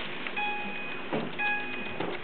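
Electronic tones from a baby walker's toy panel: two steady beeps of about half a second each, with a third starting near the end.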